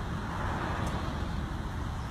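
Road traffic: a passing car's engine and tyre noise swells about half a second in, over a steady low rumble.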